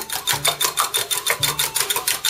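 Wire whisk beating eggs in a glass measuring cup, the wires striking the glass in a fast, even clicking.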